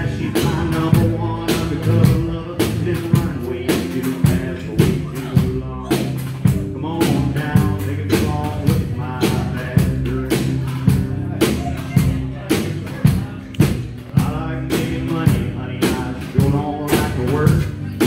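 Live band playing a song on acoustic guitar, upright double bass and drum kit, with a steady drum beat and a man singing.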